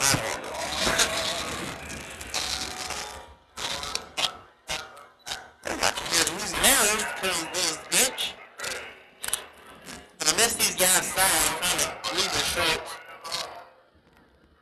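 A girls' drill or step team chanting and shouting in the street, with sharp percussive hits from claps or stomps mixed in at irregular intervals.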